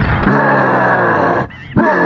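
A loud, long roaring yell from a cartoon character, held twice with a short break about one and a half seconds in.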